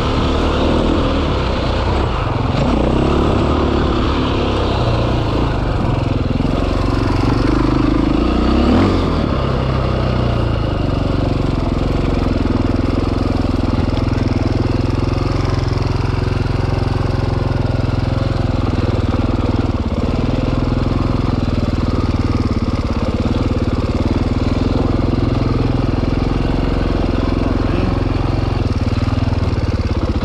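KTM four-stroke single-cylinder dirt bike engine running while being ridden, its revs rising and falling over the first ten seconds, then holding steady at low revs.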